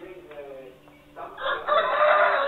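Faint music, then a loud, drawn-out pitched call begins a little past halfway and carries on.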